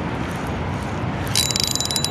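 A spinning reel being worked by hand: about halfway through, a rapid, even clicking whir starts as the reel turns, over a steady background rush.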